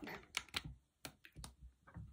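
Faint, irregular clicks and light knocks of a camera being handled and set down, about half a dozen in two seconds.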